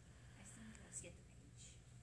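Near silence: room tone with a low steady hum, and a faint whisper of voices from about half a second to a second and a half in.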